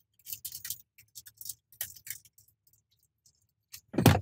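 Faint, irregular clicks and rustles of small items being handled in a car, dying away about two and a half seconds in.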